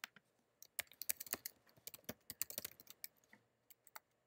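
Typing on a computer keyboard: quick runs of faint key clicks, densest in the middle and thinning out near the end.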